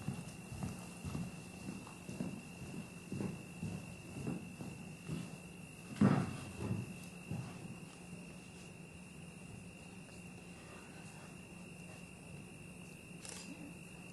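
Hard-soled footsteps on a stage floor, about two steps a second, with a louder thump about six seconds in; after seven seconds the steps stop and only a faint steady hum remains.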